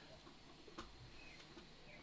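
Near silence: faint room tone, with one faint click a little under a second in.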